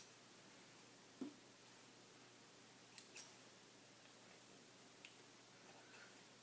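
Scissors snipping through dry curly hair: two quick quiet snips about three seconds in, a small low thump about a second in and a faint tick near the end, otherwise near silence.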